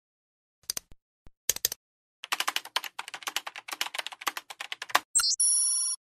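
Typing: a few scattered key clicks, then a fast run of clicks for about three seconds. A short falling chirp follows, then a bell-like ringing tone of several pitches that stops suddenly.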